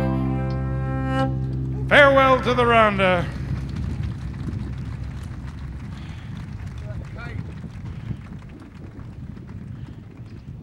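Irish ceili band of fiddle, mandolin, guitars and banjo finishing a tune: a held final chord stops about a second and a half in, then a quick burst of falling sliding notes follows. After that only a low background rumble with faint scattered sounds remains, slowly fading.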